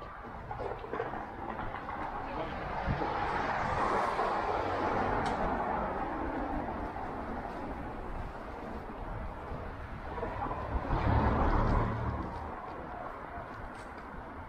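City street traffic: a vehicle drives past, its noise swelling and fading about four seconds in, then a second, heavier-sounding vehicle with more low rumble passes about eleven seconds in.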